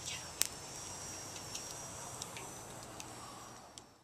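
Wood fire burning in a metal fire pit, a few sharp crackling pops over a faint steady hiss, the loudest pop just under half a second in. The sound cuts off abruptly near the end.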